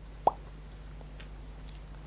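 A single short mouth click, a lip smack, about a quarter-second in, over a faint steady low hum of room tone.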